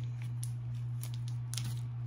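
Foil booster-pack wrappers crinkling as they are handled, a few brief rustles over a steady low hum.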